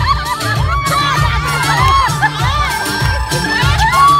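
Crowd cheering and shouting over loud dance music with a steady, repeating beat.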